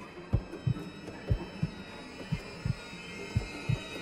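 Heartbeat sound effect in a trailer score: low double thumps, one pair about every second, over a sustained high, eerie drone.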